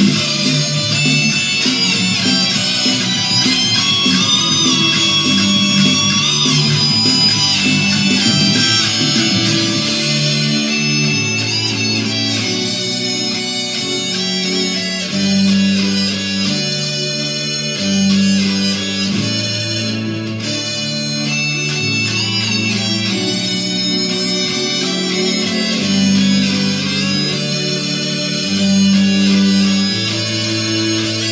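Ibanez electric guitar playing a fast, sustained lead through a Digitech RP355 with its harmonizer on, so two guitar lines sound in harmony, over a rock backing track. Held bass notes change every second or two, and the lead bends and wavers in pitch.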